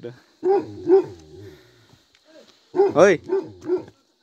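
A dog barking: two sharp barks about half a second and a second in, then a quick run of four or five barks near the end.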